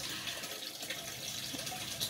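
Steady, faint sound of water running and trickling, as from an aquaponics system's flow.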